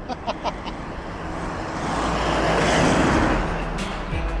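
Road and wind noise inside a moving Toyota LandCruiser Troop Carrier, with a rushing noise that swells to a peak about three seconds in and then eases off.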